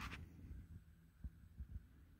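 Near silence: a faint low hum with a few soft, low thumps in the second half.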